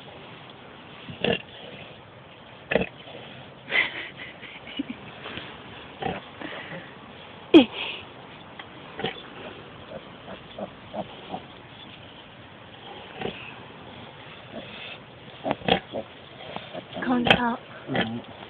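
A farrowing sow and her newborn piglets: short, separate grunts and squeaks every second or two, the loudest a brief falling squeal about halfway through.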